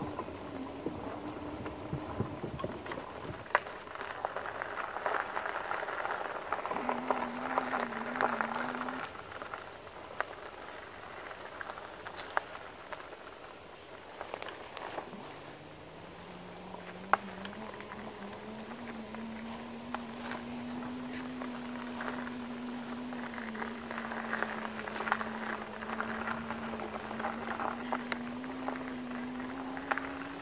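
RadMini electric bike's rear hub motor whining under throttle. The whine comes and goes at first, then holds from about halfway and slowly rises in pitch as the bike speeds up. Under it run tyre crunch on the dirt trail and scattered rattles and clicks from the bike.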